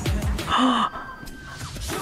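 A woman's loud, sharp gasp of astonishment over pop music, about half a second in. The music then drops away for about a second.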